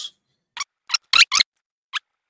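About five short, sharp clicks of a computer mouse, spaced irregularly from about half a second in to near the end, with the loudest pair just after one second.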